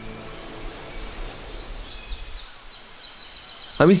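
Nature ambience of birds chirping over a steady faint hiss, with thin high whistled notes and short gliding chirps around the middle.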